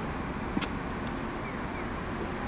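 Yamaha SR500 single-cylinder four-stroke engine idling steadily, with one sharp click about half a second in.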